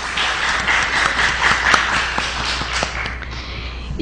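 Small audience applauding, a dense patter of hand claps that gradually dies away near the end.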